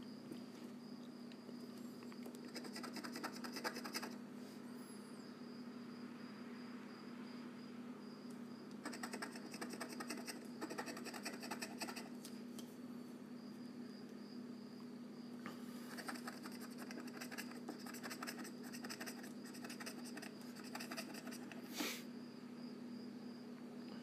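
Scratch-off lottery ticket being scratched in three spells of quick, rapid strokes, faint over a steady low hum.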